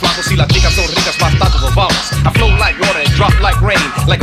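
A late-1990s Eurodance track playing: a steady, pulsing bass beat with a vocal line over it.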